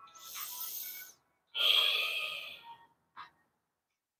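A woman breathing audibly through her mouth as she holds a deep yoga forward fold: two long breaths, the second louder and harsher.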